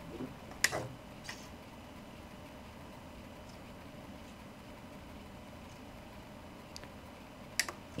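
A power switch clicks on sharply about a second in, followed by a softer click. A few faint ticks follow over quiet room tone.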